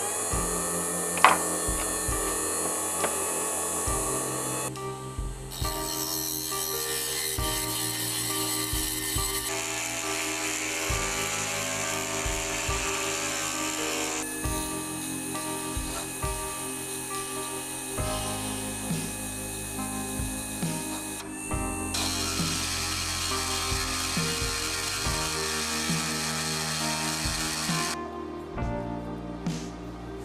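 Background music over a small electric motor spinning a stainless steel rod while a hand file is held against it to turn it down, a steady rasping hiss that starts and stops abruptly several times.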